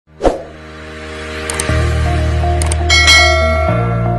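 Channel intro sting: a sharp hit opens it, then a rising swoosh over synth music whose bass note changes twice, with short pings and a bright chime hit about three seconds in.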